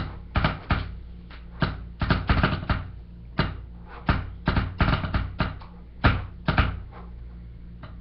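Hands tapping and knocking on a wooden tabletop close to the microphone: sharp clicks in quick little clusters, a few strokes at a time, with short gaps between, over a steady low electrical hum.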